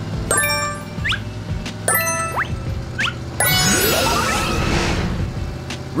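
Cartoon item-pickup sound effects: bright chimes about every one and a half seconds, three in all, each followed by a short rising whistle, then a longer sparkling flourish, as candies are collected. A steady low hum of a cartoon car engine and music runs underneath.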